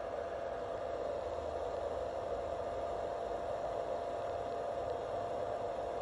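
Small cooling fan of a hobby balance charger running steadily under charge, a constant whir with a steady mid-pitched whine.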